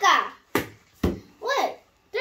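A young girl's voice saying a few short, clipped syllables, some with sharp, sudden starts.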